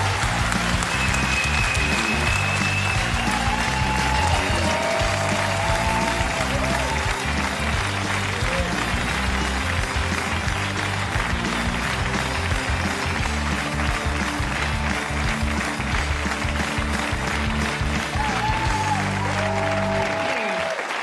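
Studio audience applauding, with music that has a steady beat playing underneath.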